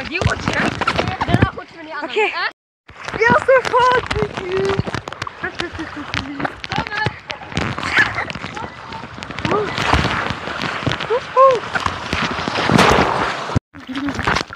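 Boys shouting and laughing as they ride down a water slide, over the rushing hiss of water running down the chute. The sound cuts out for a moment about two and a half seconds in.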